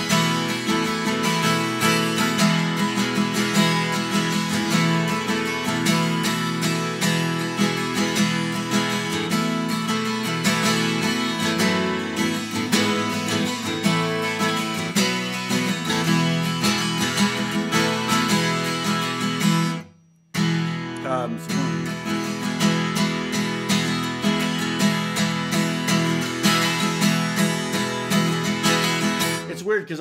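Twelve-string acoustic guitar strummed steadily in a 6/8 groove, the chords changing as it goes. The sound cuts out suddenly for about half a second around two-thirds of the way through, then the strumming carries on.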